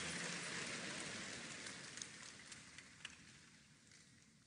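A large congregation clapping, the applause dying away over a few seconds to a few scattered claps.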